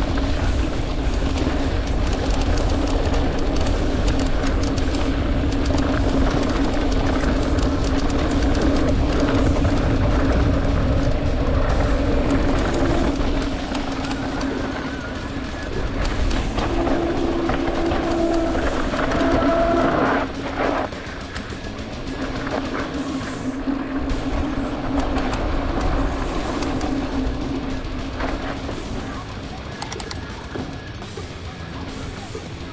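Mountain bike rolling down a dirt singletrack: steady wind rumble on the camera microphone and tyre and trail noise, with music playing over it. The rumble eases a little about two-thirds of the way through.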